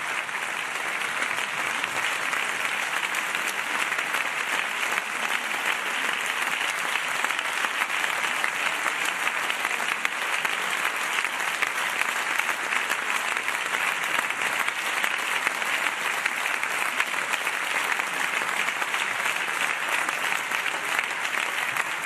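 Long, steady applause from a chamber full of parliamentarians, many hands clapping at once.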